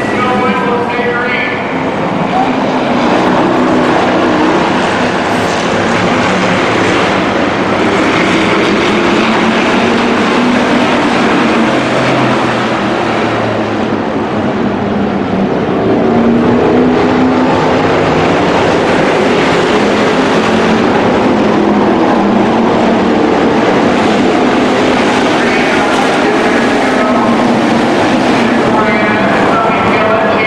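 A pack of hobby stock dirt-track race cars with V8 engines running together around the oval, their many engine notes rising and falling as they lap.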